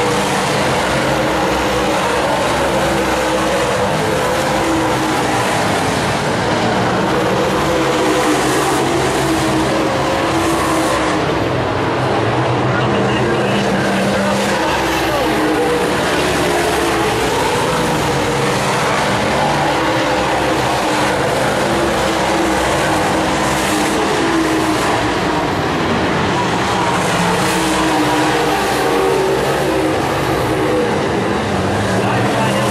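Dirt Super Late Model race cars' V8 engines running hard around a dirt oval, several cars together in a steady loud din whose pitch rises and falls as they pass.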